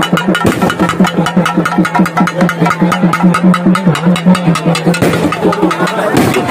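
Festival drums beaten in a fast, steady rhythm of several strokes a second, with a steady low drone under them and the noise of a packed crowd.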